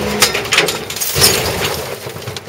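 A car rolling off its side and dropping back onto its wheels: a few knocks as it tips, then a loud crash of its body landing about a second in.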